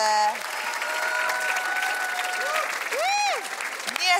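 Studio audience applauding, with a few voices calling out over the clapping, one rising and falling about three seconds in.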